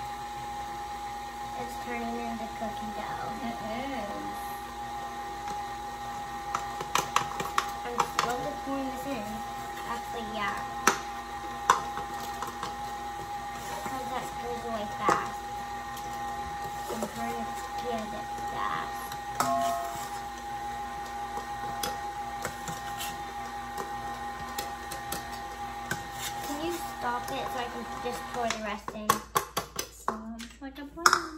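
Electric tilt-head stand mixer running steadily on low, beating cookie dough as flour is added, with scattered clicks and knocks of the measuring cup against the steel bowl. The motor stops shortly before the end.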